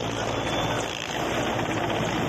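Helicopter hovering low, its rotor and engine making a steady, loud noise.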